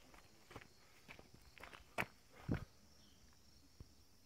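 Footsteps on gravel, a short crunch about every half second, faint.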